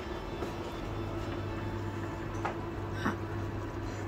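A steady low hum from a running kitchen appliance, with two faint light clicks of utensils about two and a half and three seconds in.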